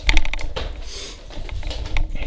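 Handling noise from a handheld camera being moved: a quick cluster of sharp clicks and knocks at the start, a low rumble throughout, and one more click at the end.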